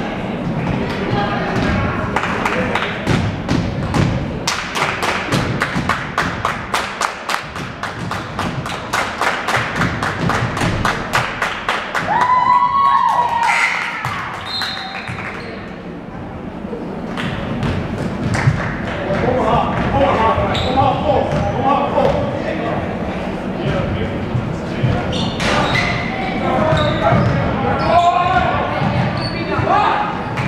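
Basketball game on a gym floor: a basketball bouncing in a quick, even run of thuds for the first third, a couple of sharp sneaker squeaks on the hardwood a little before halfway, then players and spectators calling out over the play.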